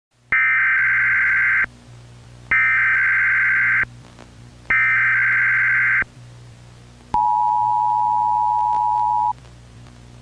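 Emergency Alert System broadcast tones: three loud, screeching data bursts of just over a second each, then a steady two-tone attention signal for about two seconds. A faint low hum runs underneath.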